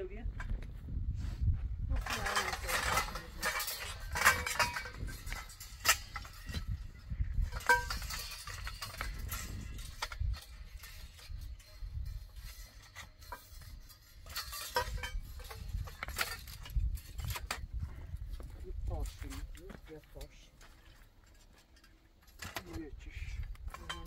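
Metal tent-frame poles clinking and knocking as they are handled and fitted together, a string of short sharp clatters, over a low wind rumble on the microphone.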